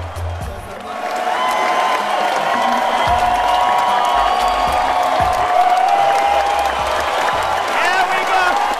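Upbeat stage music with a studio audience applauding and cheering, rising to full level about a second in.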